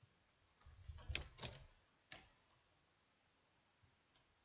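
Handling noise from the crocheted work and hook being moved: a short cluster of faint clicks and a low bump about a second in, then one more click.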